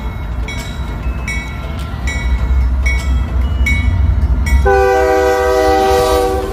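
Union Pacific GE ES44AC (C45ACCTE) diesel locomotives approaching, their low engine rumble growing louder; a little past three-quarters of the way in, the lead unit's multi-note air horn sounds and holds a steady chord.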